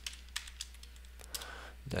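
A few scattered computer keyboard keystrokes, light separate clicks, over a low steady hum.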